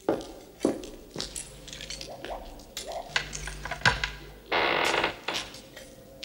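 Cartoon sound effects of clattering, knocking and creaking as the winemaker rummages in his wine cellar for a cask. A longer rattling clatter comes about three-quarters of the way in.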